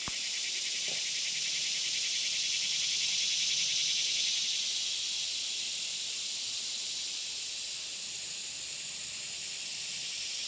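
Daytime woodland insect chorus: a steady, high, fine-grained buzzing drone that swells slightly and eases off again.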